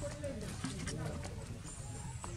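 Indistinct human voices talking in the background over a steady low hum, with a few light clicks.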